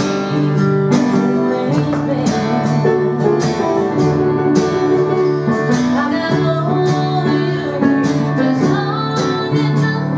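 Live acoustic guitar strumming with an electric keyboard playing chords in a slow country ballad, at a steady strumming pulse.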